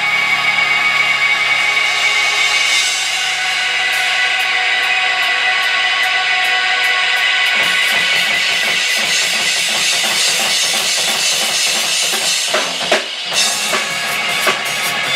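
Live hardcore punk band: a distorted electric guitar through a Marshall amp holds ringing chords, then about halfway in the drum kit comes in with a fast beat of snare, kick and cymbals. A few louder drum hits and a brief drop near the end.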